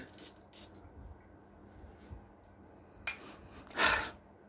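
Atomizer of an Azzaro Chrome United perfume bottle spraying in several short hissing puffs, the two loudest near the end.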